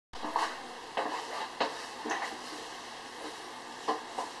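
A handful of light knocks and clicks, about five spread over four seconds, from hard objects being handled on a desk.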